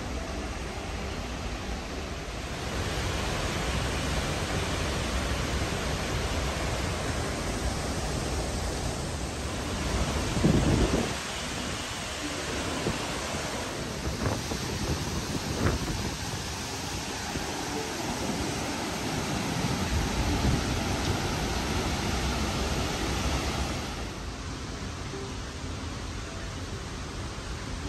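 Steady rushing roar of Rainbow Falls, a large waterfall, with a few low thumps on the microphone about ten seconds in. The roar drops off a little near the end.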